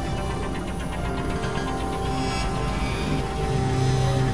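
Experimental electronic synthesizer drone music: sustained low synth notes under a steady high tone, with a rapid fluttering pulse in the upper range during the first half and a deeper held note entering near the end.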